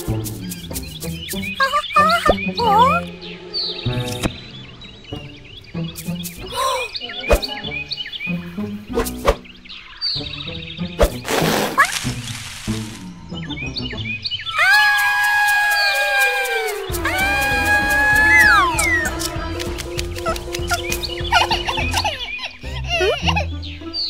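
Cartoon soundtrack: light background music with comic sound effects, including a short rushing noise near the middle and a long, drawn-out sliding pitched sound that falls, later on.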